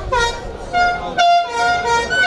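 A horn tooting: a run of short blasts, each held at one steady pitch, about three or four in two seconds.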